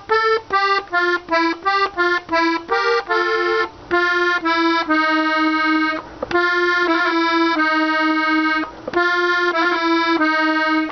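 Hohner Corona II Classic three-row button accordion in G, played slowly on the treble buttons. It starts with a run of short, separate notes, about three or four a second, then moves to longer held notes for the second half.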